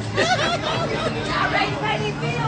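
Several people talking and chattering over one another, with a low background babble.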